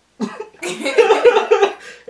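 A man and a woman laughing hard, a burst of loud, choppy laughs starting about half a second in and trailing off near the end.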